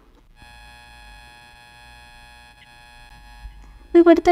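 A faint, steady buzzing tone with many overtones, starting about half a second in and stopping just before the end.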